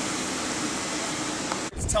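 Steady fan-like hiss of a large shop interior's ventilation. About a second and a half in it cuts off sharply to wind buffeting the microphone outdoors.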